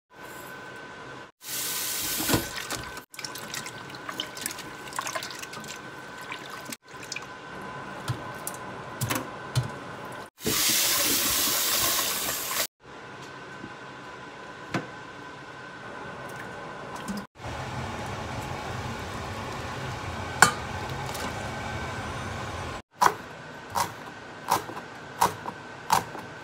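Kitchen tap running into a stainless steel pot in a sink in two short stretches, between quieter spells of apple-snail shells clicking as they are stirred and rubbed in water. A few sharp knife chops on a wooden cutting board come near the end.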